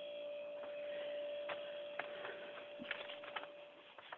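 A faint, steady hum holding one tone, with a few light clicks scattered through it.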